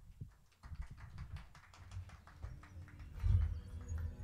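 Scattered applause from a small audience, individual claps heard irregularly from about half a second in, with a low thud about three seconds in.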